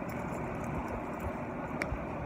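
Steady background noise, like a building's ventilation or distant traffic, with a single short click near the end.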